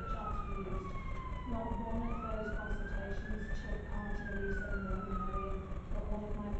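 Emergency vehicle siren wailing in slow sweeps: its pitch falls, rises again about two seconds in, and falls once more toward the end.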